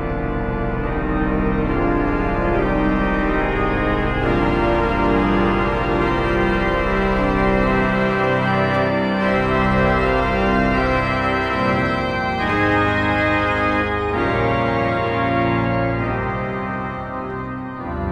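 Kuhn pipe organ played in sustained, changing chords through the swell division (Schwellwerk), with the swell box worked by the foot pedal: the sound grows louder about a second in and fades somewhat near the end as the box is closed.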